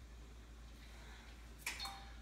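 Quiet room tone with a steady low hum, broken about one and a half seconds in by a brief sharp noise.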